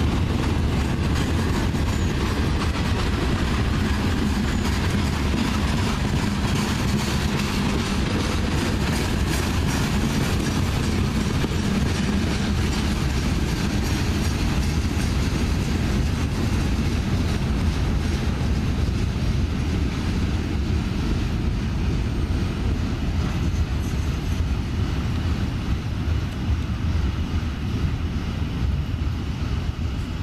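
Freight train cars rolling past: a steady, loud rumble of steel wheels on rail with rapid clicking from the wheels, easing slightly near the end.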